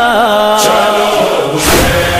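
A male voice chanting a nauha, a Shia lament for Husain, holding one long wavering note over a steady low drone. Sharp thumps mark a slow beat about once a second.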